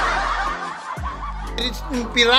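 People laughing and snickering, over background music, with a few words spoken near the end.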